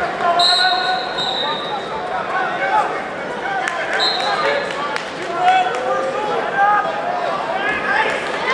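Crowd of spectators shouting and calling out over one another during a wrestling bout. A high-pitched tone sounds twice, about half a second in and again briefly around four seconds.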